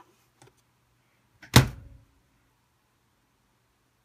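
A single sharp knock of something hard bumped or set down on a desk, about one and a half seconds in, fading within half a second. A faint low hum runs underneath.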